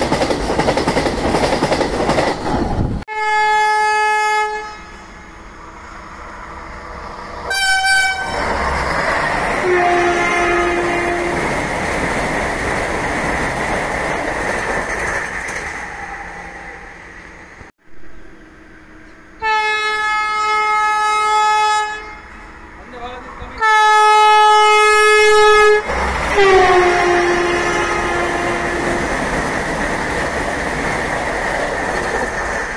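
Vande Bharat Express train rushing past at speed, a loud even roar of wind and wheels, then after a cut its horn sounding several long blasts as it approaches, some sliding down in pitch at the end.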